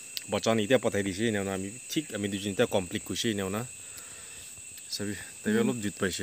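A steady, high-pitched insect chorus, a thin continuous drone that holds unchanged under people talking.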